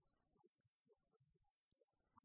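Near silence: faint film soundtrack room tone with a thin high hiss.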